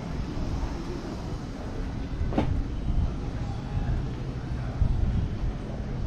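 Uneven low rumble of wind on the microphone, with one sharp click about two and a half seconds in.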